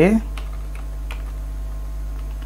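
Computer keyboard being typed, a handful of separate key clicks, over a steady low hum.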